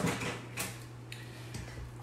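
Faint clicks and light knocks of kitchen utensils being handled at a counter, over a steady low hum.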